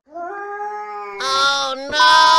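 A cat yowling in one long drawn-out call, with a hissing noise joining it about halfway through, the sound of cats squaring up to fight. It is cut off by a sharp click near the end.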